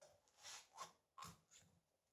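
Near silence with a few faint, short handling noises: gloved hands working the rubber bushings on a transmission crossmember.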